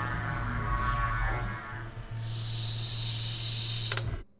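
Cartoon soundtrack: background music over a steady low hum, then about two seconds in a loud, steady hiss sound effect comes in and cuts off suddenly at the end.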